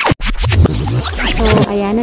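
A short electronic intro jingle for the channel logo, with DJ record-scratch effects and a voice, starting abruptly.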